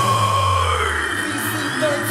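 Live crunkcore band music played loud through a club PA. A long held electronic synth tone sits over a deep bass note that stops about halfway through.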